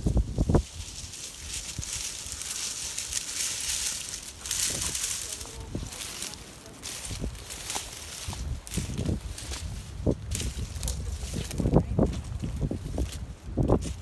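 Footsteps through a field of dry standing soybean plants: the brittle stalks and pods rustling and crackling against the legs, with an uneven low thump at each step.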